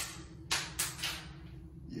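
A small pellet, just shot from a spring-loaded wrist cannon, landing and bouncing on a hard surface: three light clicks, each quieter and quicker than the last, about a third of a second apart.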